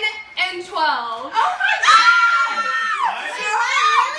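Excited, high-pitched voices and laughter from several people, a child among them, with one long held high cry about two seconds in.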